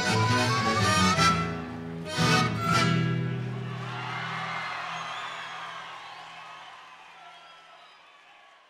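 A Puno estudiantina of mandolins, guitars and accordions plays the closing flourish of a pandilla: two sharp accented chords about half a second apart, then the final chord is held and fades away.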